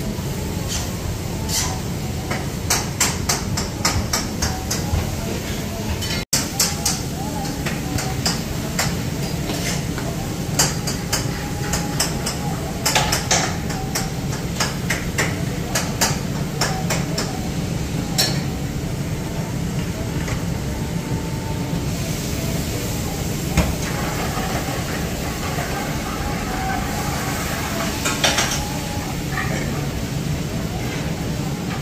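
Busy kitchen work at a naan station: a rolling pin and hands working dough on a stainless-steel counter, giving runs of sharp clicks and knocks over a steady low hum.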